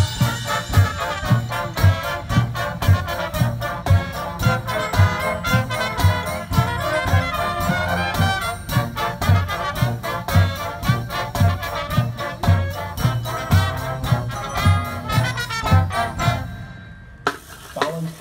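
Marching band playing: brass over a drum section keeping a steady beat. The music breaks off briefly near the end.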